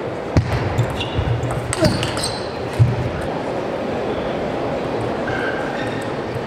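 A table tennis ball bounced on the table three times at uneven intervals, sharp taps while the player gets ready to serve, over the steady murmur of an arena crowd.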